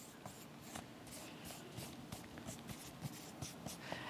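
Marker pen writing on a paper flip chart: a run of short, faint scratching strokes as letters and lines are drawn.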